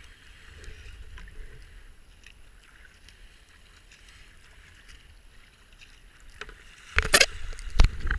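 Kayak gliding through foamy river rapids, with a soft rush of water and light paddle drips and splashes. About seven seconds in, a sudden loud burst of rushing water and splashes hits as the boat runs into rougher water.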